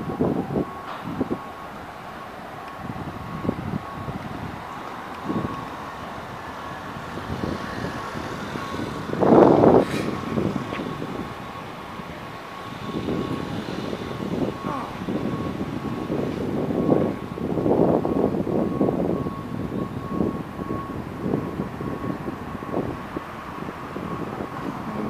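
City street traffic passing on a multi-lane road, an uneven background that swells and fades, with one brief loud surge about nine seconds in and a faint steady high tone running through it.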